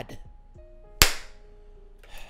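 A single sharp crack about a second in, with a short fading tail, over a few faint, soft music notes.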